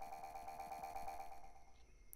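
Soft background music: a held chord of several steady tones that fades out near the end.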